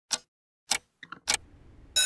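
Classroom wall clock ticking: three sharp ticks about 0.6 s apart, with a softer clatter before the third. Right at the end an electric bell starts ringing.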